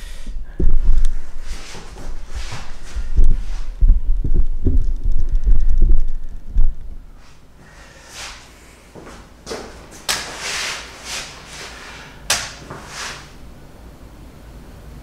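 Camera handling noise: a run of knocks and thuds as the camera is set down on a counter, then quieter rustling and footsteps over the second half.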